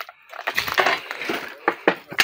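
Footsteps crunching over broken brick and debris: a quick run of irregular crunches and cracks that starts just after a brief quiet moment, with a sharper crack near the end.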